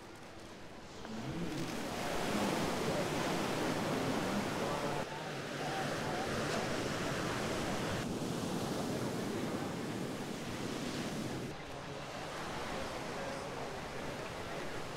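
Ocean surf breaking on a beach, a steady rushing wash of waves that shifts abruptly in level a few times.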